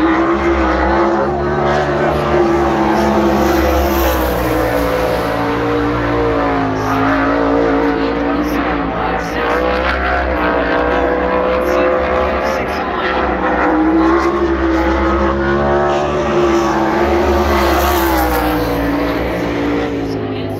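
Winged sprint car's V8 engine at speed, lapping a paved oval: its note rises and falls in long swells as it runs the straights and corners. The car stays loud throughout.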